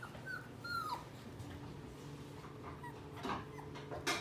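Young dachshund puppy whimpering: two short, high whines in the first second, the second dropping in pitch at its end, followed by a few fainter short noises near the end.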